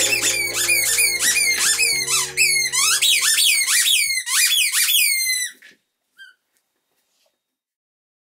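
A dog chewing a squeaky toy, giving a rapid run of high squeaks, about three a second, each falling in pitch. The squeaking stops abruptly about two-thirds of the way through.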